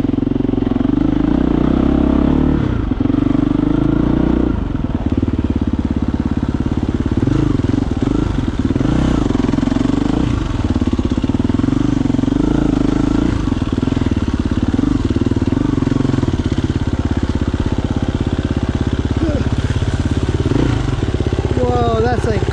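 KTM 350 EXC-F dirt bike's single-cylinder four-stroke engine running while riding a trail, its revs rising and falling with the throttle.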